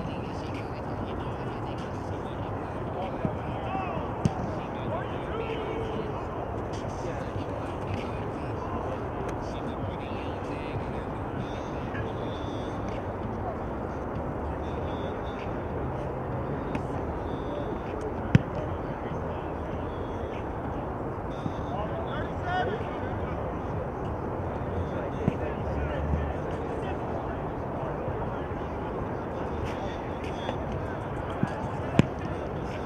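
Open-air football-field ambience of indistinct distant voices, broken by a few sharp thumps of footballs being struck. The loudest thump comes about eighteen seconds in.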